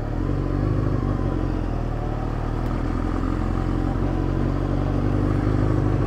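Honda CBR600F2 motorcycle's inline-four engine running steadily as the bike rides along, with no revving.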